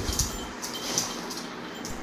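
Faint, scattered brief clicks and rustles of a dog shifting about on a marble floor.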